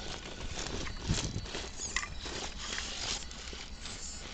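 Axial XR10 RC rock crawler scrabbling over rock: irregular clicks, scrapes and knocks from its tyres and chassis on the stones.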